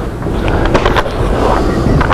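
Handling noise: a small box being picked up and moved on a workbench, giving a few sharp clicks and knocks, bunched just before the middle of the stretch and again near the end, over a steady low rumble.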